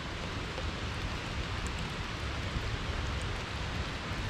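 Steady hiss of rainwater running in a shallow stream over the cobblestones of a roadside gutter.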